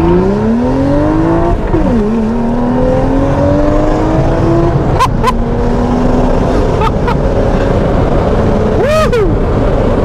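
BMW 135i's turbocharged straight-six, stage 2 remapped with an aftermarket exhaust running with its valves open, pulling hard at full throttle from a launch. Its pitch climbs, drops at an upshift about two seconds in, climbs again, then settles lower after another shift around five seconds. A few sharp cracks come near the middle and toward the end, heard from inside the cabin.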